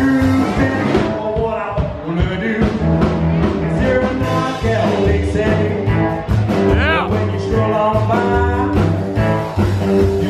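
A small band playing live: upright bass and drum kit keep a steady beat under electric guitar, with a singer at the microphone.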